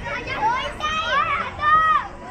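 High-pitched children's voices calling out loudly in three short bursts, with crowd chatter underneath.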